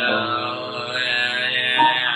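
Music from a home-made cover song: one long held note or chord with a steady, rich tone. A higher note comes in near the end.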